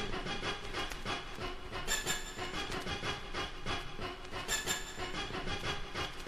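Quiet, steady clattering like a train running on rails, made of many small clicks, opening a hip-hop track. A brighter, ringing accent recurs about every two and a half to three seconds.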